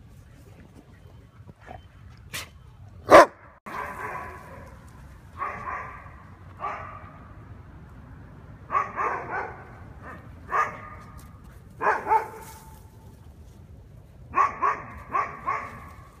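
A dog barking in short bursts of one to four barks, about a dozen barks in all, ending with a quick run of four. A sharp knock about three seconds in is the loudest sound.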